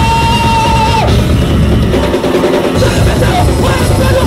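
Punk band playing loud and fast live: drum kit and distorted guitars, with a held high feedback-like tone in the first second that bends down and cuts off. The bass and kick drop out briefly a little past two seconds, then the full band comes back in.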